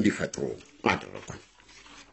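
Speech only: a voice speaking in short broken phrases with pauses between them.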